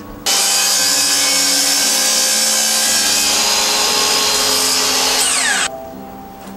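Electric miter saw running and making a square 90-degree crosscut through a thin wooden board. It starts suddenly, runs steadily for about five seconds, and cuts off abruptly near the end.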